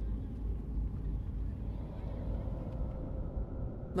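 A low, steady rumble with no clear pitch, and a faint held tone over it in the second half.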